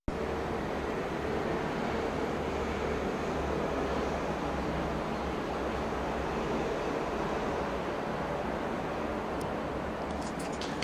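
Steady low rumbling noise with a faint hum, unchanging throughout.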